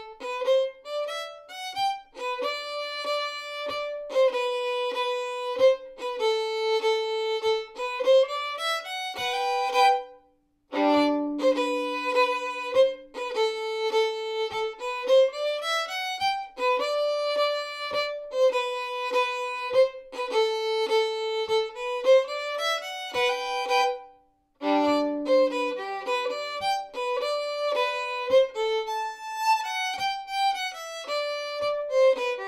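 Solo fiddle playing a mazurka folk tune: a bowed melody of short, quick notes. It breaks off briefly twice, about ten seconds in and again near the end, each time starting again with low double-stopped notes.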